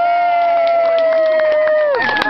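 A long, high, drawn-out cheer from one or two voices, held steady for about two seconds and dropping in pitch at the end.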